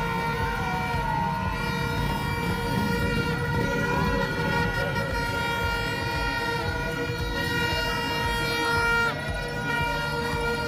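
Motorcade traffic: several horns held in steady tones at once over the rumble of car and motorbike engines, with the overall sound dipping slightly about nine seconds in.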